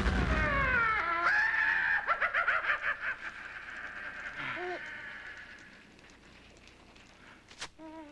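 A low explosion rumble dies away in the first second, with wavering, falling high cries or tones over it that keep going for a couple of seconds and then fade. After that it is faint, with a brief call-like tone about halfway and a sharp click near the end.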